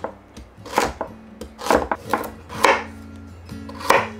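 A knife slicing through beets on a wooden cutting board: about six uneven strokes, each a sharp knock of the blade reaching the board.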